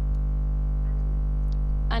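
Loud, steady electrical mains hum with a buzz of many overtones running through the audio, unchanging throughout.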